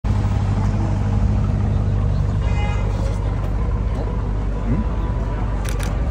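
Steady low rumble of an idling car engine over general street noise and faint voices. A brief high tone sounds about two and a half seconds in.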